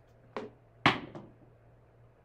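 A pair of thrown dice landing on a craps table's felt and bouncing against its back wall: a knock, then a louder sharp clack about half a second later, and a small last tap as they settle.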